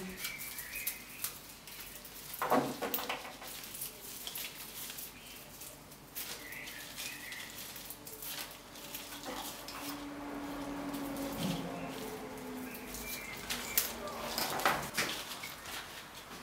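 Quiet rustling and small scattered clicks of flower stems, leaves and green raffia being handled as a hand-tied bouquet is bound at its narrowest point.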